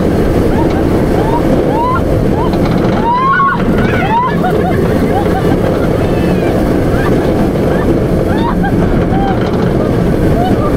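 Inverted roller coaster train running through its circuit at speed, with a loud steady rush of wind over the microphone and the rumble of the train. Riders give short, often rising yells and screams throughout.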